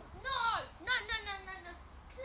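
A child's high-pitched voice calling out twice without clear words: a short cry, then a longer one whose pitch falls away.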